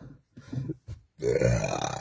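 A man's voice: a short sound about half a second in, then a drawn-out low, rough vocal sound lasting most of a second, which could be a belch.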